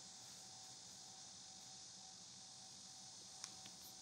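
Near silence: room tone with a faint steady hiss and one faint tick about three and a half seconds in.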